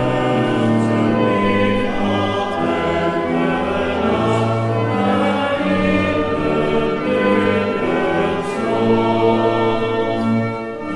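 Congregation singing a hymn in unison with pipe organ accompaniment, slow held notes changing about once a second.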